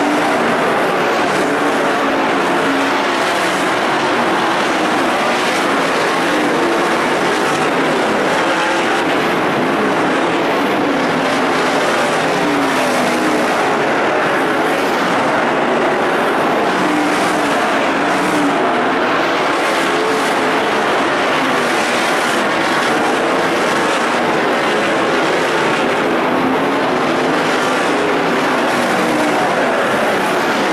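A pack of winged sprint cars racing on a dirt oval, their V8 engines running hard without a break, the pitch rising and falling as the cars go through the turns.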